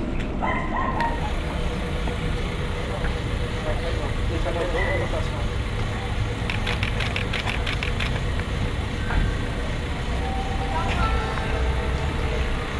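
A steady low rumble of vehicles, probably idling engines, under faint background voices. About six and a half seconds in comes a quick run of about ten clicks.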